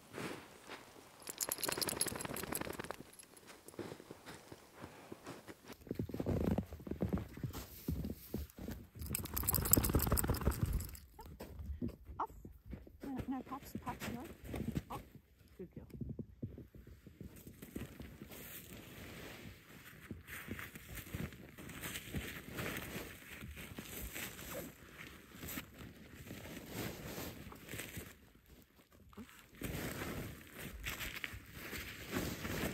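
Crunching and shuffling in fresh snow, as from footsteps and handling, in uneven bursts that are loudest in the first half.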